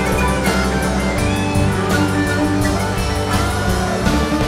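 Live rock band playing an instrumental passage with no vocals: electric guitar over bass guitar and drum kit, with a guitar note bending upward a little after a second in.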